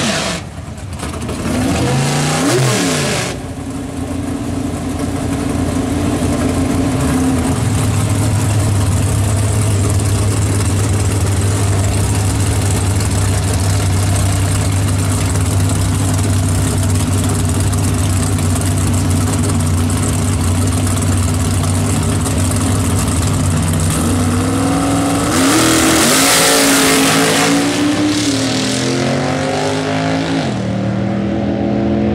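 Two bracket drag cars. Their engines rev as a burnout ends, then idle with a steady low drone while staged at the start line. About 25 seconds in they launch together at full throttle, and the sound falls in pitch as they pull away down the strip.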